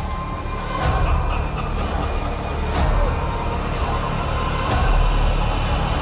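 Dramatic film-trailer soundtrack: dark music over a deep, heavy rumble, punctuated by sharp hits roughly once a second.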